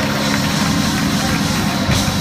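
Congregational praise with loud, steady, sustained low notes from the church band, under hand clapping and voices.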